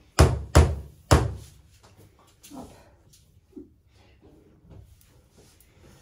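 Three loud, sharp knocks about half a second apart, a spatula knocking against a metal tart pan, followed by a few faint taps and scrapes as a tart filling is spread.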